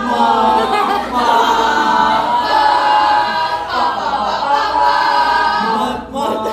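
A mixed group of students singing loudly together, unaccompanied, in held phrases of about a second each.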